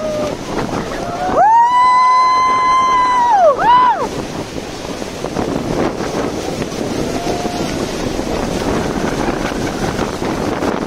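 The steady rush of the falls' water and wind buffeting the microphone aboard a tour boat. A little over a second in, a high voice calls out a long "whoo" that rises, holds and falls away, then gives a short second whoop.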